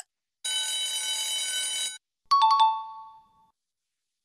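Quiz countdown-timer sound effects. A last tick is followed by a steady ringing alarm lasting about a second and a half as time runs out. Then a bright chime is struck three times in quick succession and rings out for about a second, marking the reveal of the answer.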